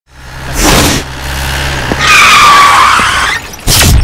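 A vehicle engine running, then tyres squealing in a skid for about a second and a half. A rush of noise comes about half a second in and again just before the end.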